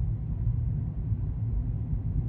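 Steady low rumble of a car cruising on a highway, engine and tyre noise heard from inside the cabin.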